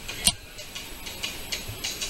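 A single sharp click about a quarter second in, over faint steady room hiss.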